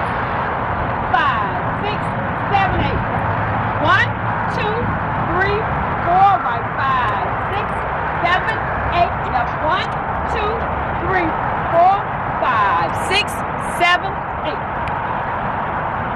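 Steady outdoor noise with a voice heard on and off over it.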